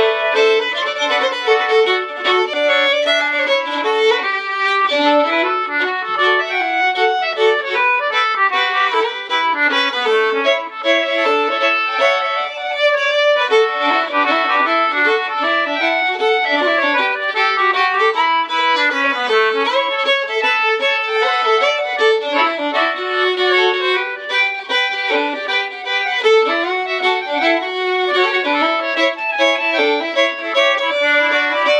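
Fiddle and concertina playing a mazurka together in 3/4 time, the bowed fiddle melody over the concertina's reedy notes, with no break.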